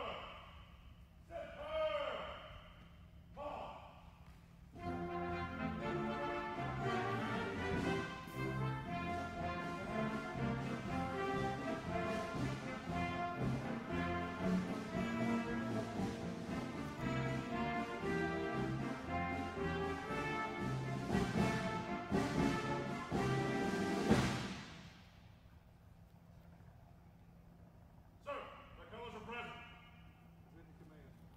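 Shouted drill commands, then a ceremonial band with brass plays for about twenty seconds and stops. Another short shouted command comes near the end.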